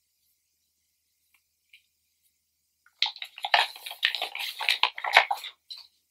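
Plastic bag crinkling as it is handled. The crinkling starts about halfway through and runs as a dense crackle for about two and a half seconds, with a last short rustle near the end.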